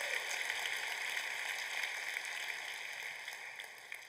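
Congregation applauding, a steady patter of many hands clapping that slowly dies down toward the end.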